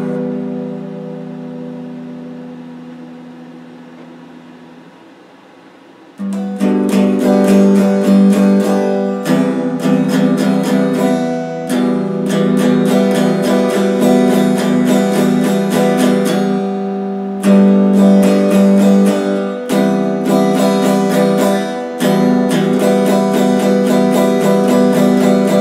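Stratocaster-style electric guitar: a strummed chord rings and slowly fades for about six seconds, then fast chord strumming starts again and runs on, broken by a few brief pauses.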